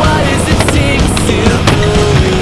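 Skateboard wheels rolling on concrete with a few sharp clacks of the board, heard under loud music.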